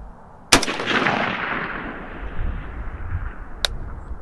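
A single rifle shot from a scoped FN SCAR-pattern semi-automatic rifle, about half a second in, its report echoing and dying away over about two seconds. A short, sharp click follows about three seconds after the shot.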